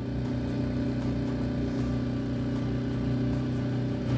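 Small outboard motor driving a skiff along at a steady speed: a constant, even engine hum with the hiss of water rushing past the hull.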